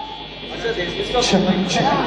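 Mostly speech: a man's voice saying "check" through the PA microphone about a second in, over a background of crowd chatter in a hall.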